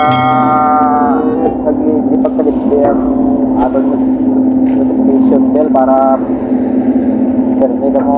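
Excavator engine running with a steady, loud drone at one constant pitch while the bucket digs in gravel and mud.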